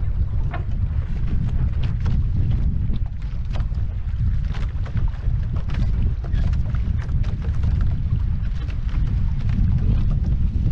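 Wind buffeting a camera microphone on a Viper catamaran sailing under way, a heavy steady rumble, with water splashing and hissing against the hulls in many short spurts.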